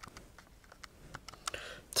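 Keys of a handheld calculator being pressed: an irregular run of about a dozen soft plastic clicks.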